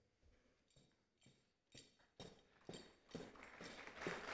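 Near silence broken by a few faint clicks of high heels stepping across a wooden stage floor, about half a second apart, starting about two seconds in.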